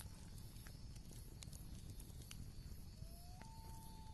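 Very quiet background with a low hum and a few faint soft ticks. Near the end a faint tone rises briefly in pitch, then holds steady.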